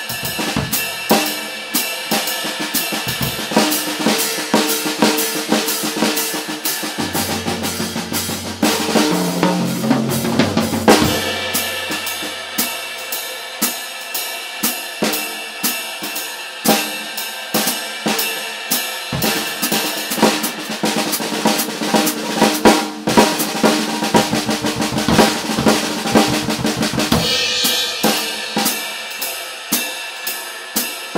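Jazz drum kit played solo: swing time on the cymbals alternating with four-bar solo breaks across snare, toms and bass drum, in the manner of trading fours. Pitched tom rolls come in the middle and again in the later part.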